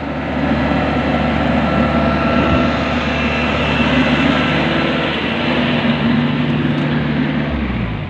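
Diesel engine of a Yanmar YH850 rice combine harvester running steadily at working revs as the machine is driven off a truck. The engine note drops near the end as it is throttled back.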